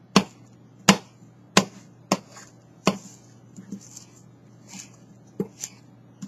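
Kitchen knife chopping wheatgrass into short strips on a cutting board: five sharp chops in the first three seconds, then softer, sparser cuts.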